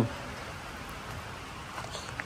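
Steady, even outdoor background noise, a low hiss with no distinct sounds in it.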